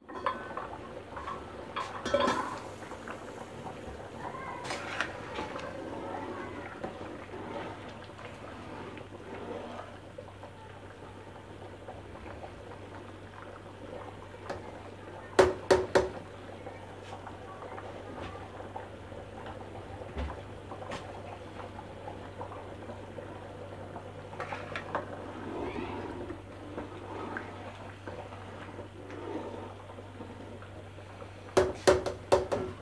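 Rice boiling in water in an aluminium pot, a steady bubbling, while a metal slotted spoon stirs and scrapes in the pot. About two seconds in there is a metal clatter as the lid comes off, and about halfway through three sharp metal taps of the spoon against the pot.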